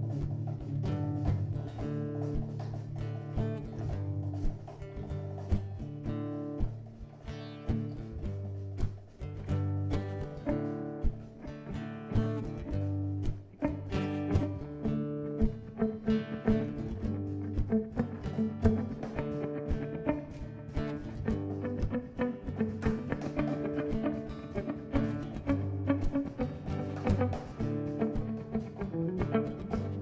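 Instrumental guitar passage between sung verses: an acoustic guitar plays along while an electric guitar picks a run of single notes, with a steady low line underneath.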